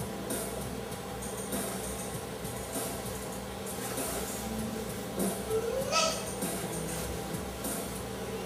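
Music from a vinyl record playing, heard faintly. A short rising cry cuts in just before six seconds in.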